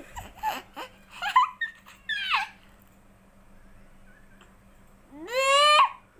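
A small child's high-pitched voice: a few short squeals and syllables in the first two seconds, then, after a quiet stretch, one long call rising in pitch near the end.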